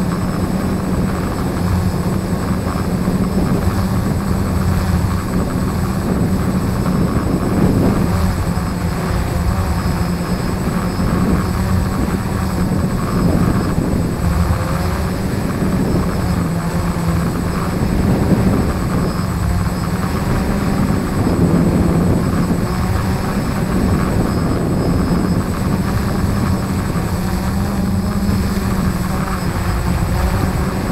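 F450 quadcopter's electric motors and propellers humming steadily, heard from its own onboard camera, the pitch wavering slightly as the motors adjust, with wind noise rushing over the microphone. The quad is coming down under return-to-home.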